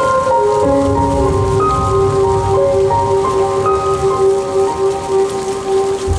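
Music for a fountain show played over loudspeakers: a slow melody of held notes over a sustained note, with a steady hiss of water from the fountain jets spraying and falling onto the bay.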